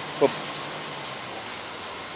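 A single short spoken word, then steady outdoor background noise with no distinct events.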